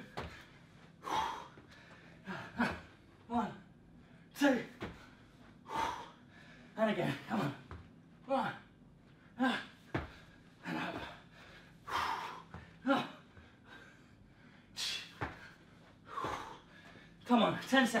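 A man breathing hard and gasping through repeated press-ups and burpees, a short, strained, voiced exhalation roughly every second, with a few sharp thuds of his landing on the floor.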